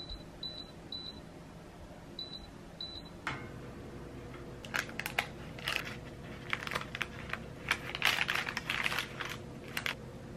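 A digital countertop oven giving five short high beeps as its control knob is turned to set temperature and time. Then baking parchment rustles and crinkles in irregular bursts as it is pulled back from the sides of a baked loaf.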